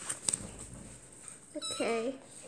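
A tabby kitten meows once, briefly, near the end. A couple of light clicks come in the first half second.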